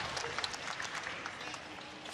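Arena audience applauding a successful snatch, the clapping dying down.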